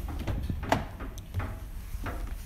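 A 2016 Audi A3's driver's door being opened: a sharp latch click just under a second in, with a few softer knocks around it, over a low steady rumble.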